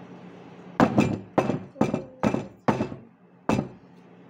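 A batter-filled metal tube cake pan knocked down on a table six times in quick succession, each knock a sharp thud with a brief metallic ring. This is the usual tapping that settles the batter and knocks out air bubbles before baking.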